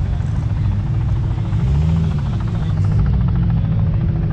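Helicopter flying low overhead: a steady, rapid rotor chop over a deep engine drone.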